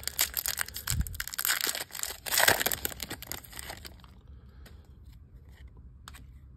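A foil-wrapped trading card pack being torn open and crinkled by hand. The crackling is loudest about two and a half seconds in and dies down after about four seconds.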